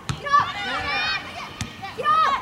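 Women footballers shouting short, high-pitched calls to one another during play, with a couple of sharp knocks in between.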